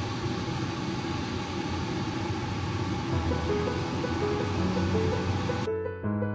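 Hot oil sizzling steadily as lumpia (Filipino spring rolls) fry in a pan, cutting off suddenly near the end. Soft background music plays along.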